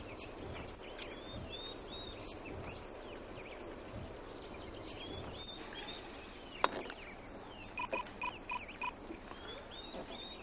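Birds chirping over a faint outdoor background hush. About two-thirds of the way in there is a single sharp click, then five quick, evenly spaced beeps.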